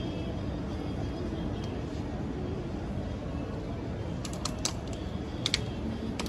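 Steady city street noise with traffic running. About two thirds of the way through come a handful of short, sharp clicks.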